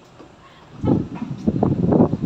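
Wind buffeting the microphone, starting about a second in as a loud, uneven, gusting rumble.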